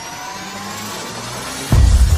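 Intro sound effects for an animated logo: a rising synthetic sweep of several tones climbing in pitch, cut off near the end by a sudden deep boom.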